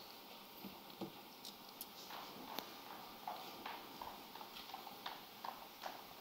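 Faint room sound in a hall with scattered light clicks and knocks and quiet, distant voices.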